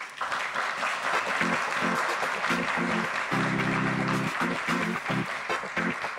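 An audience applauding steadily, the clapping thinning out near the end, over music of short plucked-sounding notes with a held chord in the middle.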